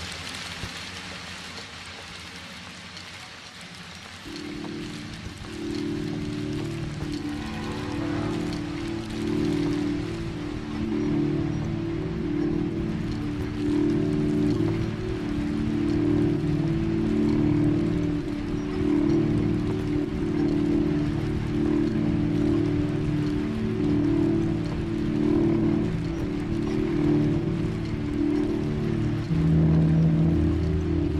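Electronic music built from a hissing, rain-like noise texture. About four seconds in, a sustained low chord with pulsing layers enters and slowly grows louder.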